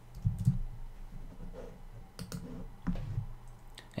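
Computer keyboard being typed on: scattered key clicks in a few short runs.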